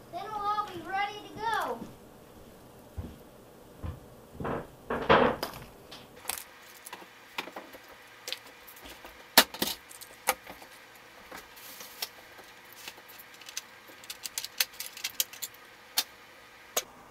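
Plastic and metal clicks and small rattles of a word processor's print-wheel and stepper-motor assembly being handled and turned over in the hands, many separate ticks from about six seconds in. A voice is heard briefly at the start.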